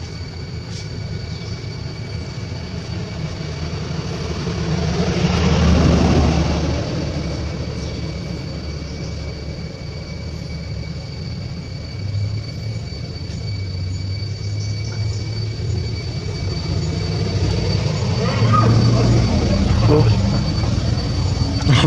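Low engine rumble of a passing vehicle, swelling to a peak about six seconds in and fading, then building again near the end, over a steady thin high-pitched whine.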